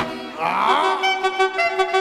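Latin dance-band recording in an instrumental break: the drums and bass drop out while a wind instrument plays a sliding phrase and then held notes. The full beat comes back in at the end.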